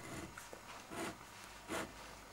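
Steel nib of a fine-tuned Montblanc 342 fountain pen scratching across paper in three short strokes about a second apart.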